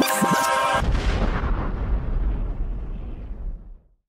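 Hip-hop outro music ends just under a second in on a deep boom-like rumble that fades away over about three seconds, cutting off just before the end.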